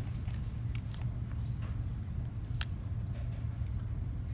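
Steady low background hum, with a few faint clicks from the stone cast being handled, one a little sharper past the middle.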